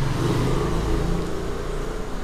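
A steady low engine rumble with no speech over it.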